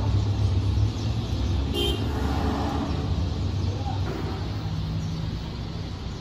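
Background road traffic: a steady low rumble, with a brief horn toot about two seconds in.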